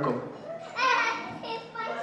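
A young child's high-pitched voice speaking, about a second long, in a hall with some echo.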